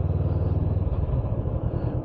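Motorcycle engine running while riding at a steady pace along a gravel road, with wind and tyre noise; the low engine note gets weaker about a second in.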